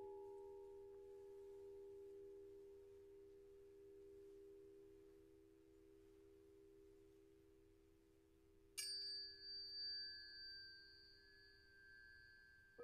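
Tuning forks ringing. A pair of low, pure tones fades slowly, then about nine seconds in a fork is struck sharply and rings with a higher tone and bright, thin overtones.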